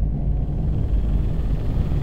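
Deep, steady rumble of a cinematic sound-design drone.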